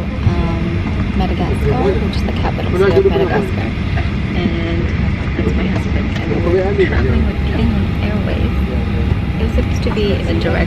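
Steady low rumble of an airliner cabin, unbroken, with a person's voice over it at times.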